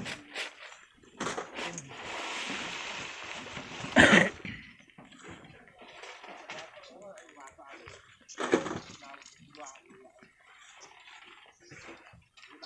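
Loose volcanic sand and gravel sliding down a cliff face as it is prised away with bamboo poles: a rushing hiss from about two seconds in, with a loud impact of falling rock about four seconds in.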